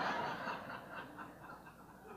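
Audience laughing after a punchline, the laughter dying away into scattered chuckles.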